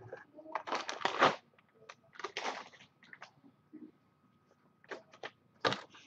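Off-camera rustling or crinkling handling noise in two short bursts, then a few light clicks near the end.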